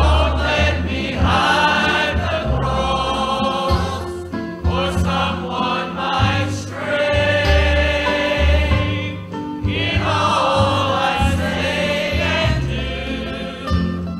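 Church choir singing a gospel song with instrumental accompaniment, sustained sung phrases over a steady, moving bass line.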